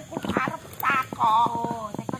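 A woman's high, wavering voice in short cries and a held, warbling note, broken up by many quick clicks.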